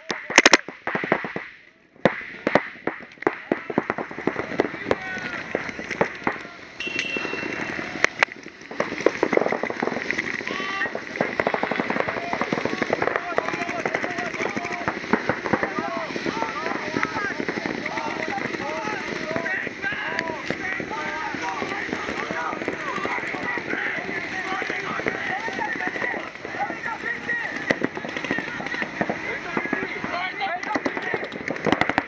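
Paintball markers firing, sharp pops in quick strings, thick in the first few seconds and continuing throughout. From about nine seconds in, many overlapping voices are shouting over the shots.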